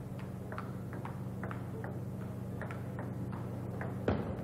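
Table tennis rally: the celluloid ball clicks off the paddles and the table in an irregular series of light ticks, often in quick pairs of hit and bounce.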